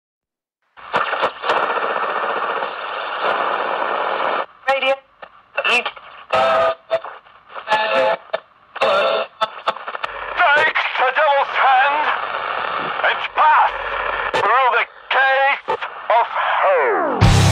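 Radio-like intro sample: thin, narrow-sounding static with choppy snatches of voice and wavering tones, starting a moment after silence.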